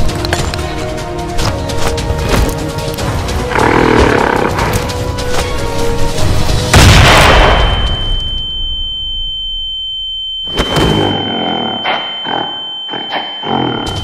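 Action-film soundtrack: dense music with sharp hits, building to a loud boom about seven seconds in. After the boom a steady high-pitched ringing tone holds while the music drops away, and short hits return near the end.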